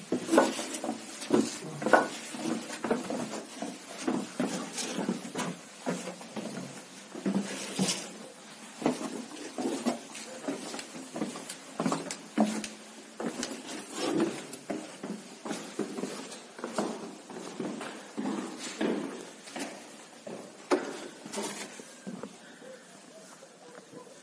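Footsteps climbing stone stairs in a narrow stairwell: a run of irregular knocks, a few a second, growing fainter near the end.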